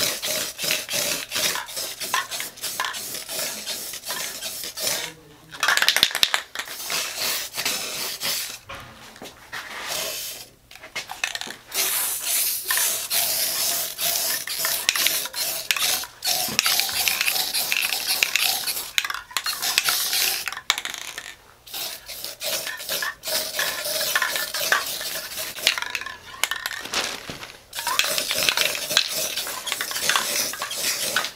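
An aerosol spray-paint can shaken hard, its mixing ball rattling in fast runs, in between hissing sprays of paint. It breaks off briefly several times.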